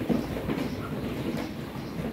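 Many ostrich chicks moving about in cardboard shipping boxes: a dense rustle of irregular knocks and scratches on the cardboard over a steady low rumble, with a sharper knock just after the start.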